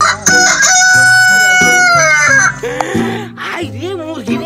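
A rooster crowing once: one long, loud call lasting about two seconds that holds its pitch and then falls away at the end.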